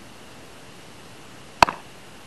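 One sharp crack of a baseball impact about one and a half seconds in, with a short ring after it, during infield fielding practice.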